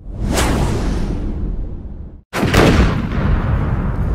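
Two whooshing, booming sound effects, each starting suddenly and dying away over a second or two; the second, just over two seconds in after an abrupt break, is the louder.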